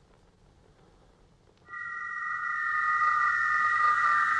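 A steady synthesized electronic tone, several pitches held together, comes in a little before halfway and grows slightly louder: the film's sound effect for a robot's thermal-vision view.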